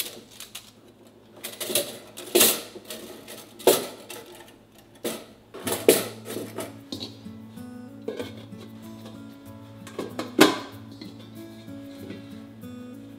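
Metal clinks and rattles from a worn stainless steel folding steamer basket as its overlapping petals are handled, with a few sharp clanks; the petals are loose and keep slipping out. Soft background music comes in about halfway.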